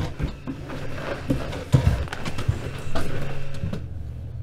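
Footsteps and light knocks, irregular and unhurried, of a person getting up from a desk and walking away across a classroom floor.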